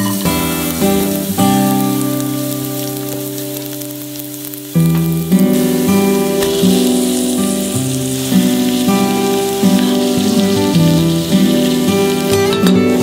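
Minced garlic sizzling as it fries in hot vegetable oil in a steel pan, a fine crackling hiss that grows fuller about halfway through. Background music plays over it and is the louder sound.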